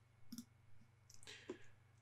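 Near silence with a few faint computer mouse clicks, one about a third of a second in and a cluster past the middle.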